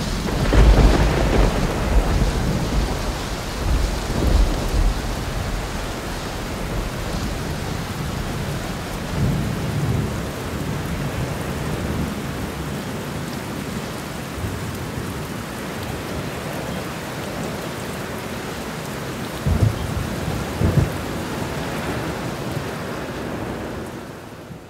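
Thunderstorm: steady hissing rain with rolls of thunder, the heaviest in the first two seconds, and two short rumbles near the end.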